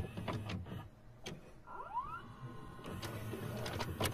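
Videocassette recorder mechanism sounds: scattered clicks and clunks over a low hum, with a short rising motor whine about two seconds in.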